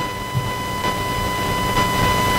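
A steady high-pitched tone with overtones holds over low rumbling room noise through a pause in the sermon.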